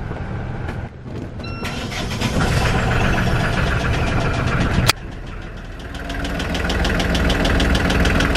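Boat's starboard diesel engine being started: short beeps from the panel about one and a half seconds in, then the engine turns over and catches. A sharp click comes near the middle. It then settles into running with a rapid, even knock, getting louder towards the end. The battery voltage is low after a dead short in the starter cable.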